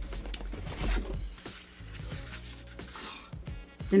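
Cardboard rubbing and scraping as small boxes are slid out of a corrugated shipping carton, with a few light clicks, over background music.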